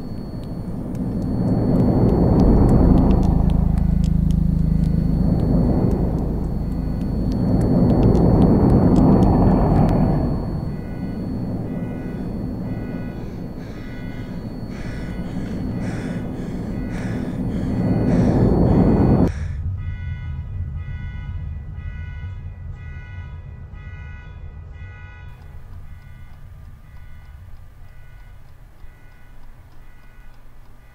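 Film soundtrack: a low drone with three swelling rumbles that cuts off suddenly about two-thirds of the way through. Soft sustained tones are left, slowly fading away.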